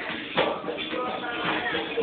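A group singing a devotional song together, with a percussion beat striking about twice a second under the voices.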